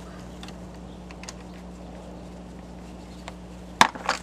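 A flathead screwdriver and fittings being worked under the hood: a few faint ticks, then one sharp click near the end, over a steady low hum.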